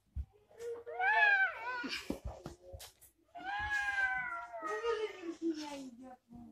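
A toddler's high-pitched, drawn-out vocal cries: a short one about a second in, then a longer one that slowly falls in pitch, with a few light knocks between them.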